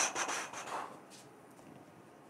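A short run of rubbing, rustling strokes that fades out about a second in, leaving faint room tone.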